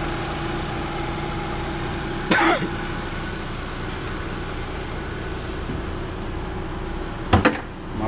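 Chevrolet S10's four-cylinder flex engine idling steadily with the hood open. About seven seconds in, the hood is shut with a loud double bang.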